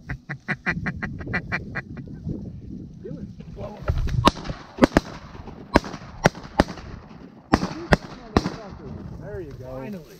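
A quick run of duck quacks, then a volley of about nine shotgun shots from several hunters over some four seconds.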